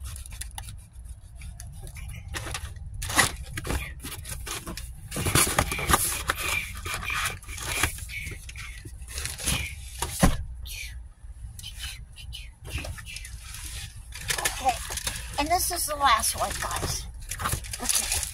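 Cardboard shipping box and the paper inside it being handled and shifted about: irregular rustling, scraping and light knocks. A short laugh opens it, and a mumbled voice comes in near the end.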